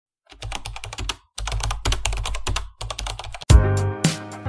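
Rapid computer-keyboard typing clicks in three quick runs, the sound effect that goes with caption text being typed out letter by letter. Music with a strong bass comes in about half a second before the end.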